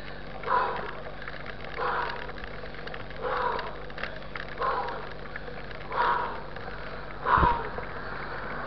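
A cyclist's heavy, rhythmic breathing while pedalling, one puff about every second and a half, six in all, over a steady faint hiss.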